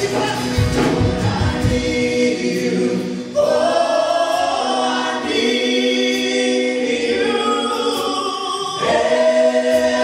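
Live worship band and group of singers performing a slow gospel song. About two seconds in, the low beat of the band drops away, leaving held chords. A second later the voices come in strongly on long sustained notes.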